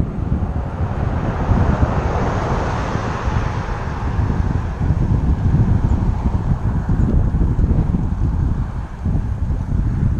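Wind buffeting the microphone of a bike-mounted action camera while cycling, with a car's tyre and road noise swelling and fading as it overtakes, loudest about two to three seconds in.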